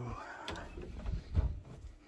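Footsteps and handling bumps of a hand-held phone being carried while walking, with a low thump about one and a half seconds in; a hummed tune trails off at the very start.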